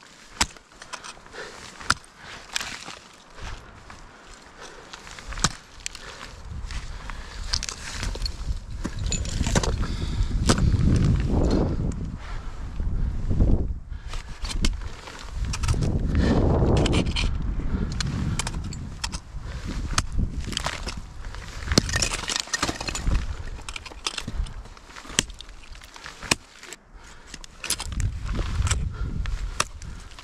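Ice tools and crampons striking and biting into water ice during a lead climb: a string of short, sharp strikes with scraping and ice crackling, irregularly spaced. A low rumble swells up a few times in the middle and near the end.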